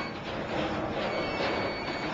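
Steady rushing noise of storm wind and heavy seas heard from inside a ship's bridge. A thin, high electronic tone comes in about a second in and holds to the end.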